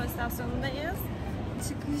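A woman's voice speaking briefly over a steady low rumble.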